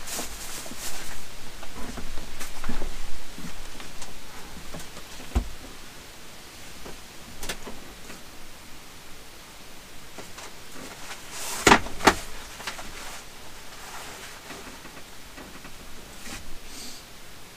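Household items being handled and moved about while tidying clutter: scattered rustles, clicks and knocks, busiest in the first few seconds. A dull thump comes about five seconds in, and two sharp knocks close together about twelve seconds in are the loudest sounds.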